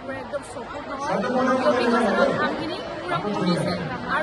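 Women's voices talking close to the microphone, with chatter from others around them.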